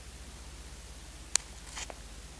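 Low steady hum with one sharp click about a second and a half in, followed by a brief rustle: handling noise as a neon tester screwdriver is held up to the device.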